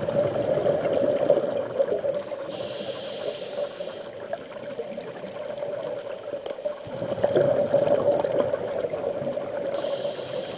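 Scuba diver breathing through a regulator underwater: a hissing inhale a few seconds in and again at the very end, and exhaled bubbles crackling and gurgling at the start and again from about two-thirds of the way through. A steady low hum runs underneath.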